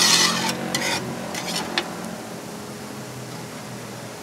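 A metal spatula scrapes and taps across a flat-top griddle in a few short strokes during the first two seconds, louder at first. Then the steady sizzle of burger patties and a hotdog sausage frying on the griddle, over a low steady hum.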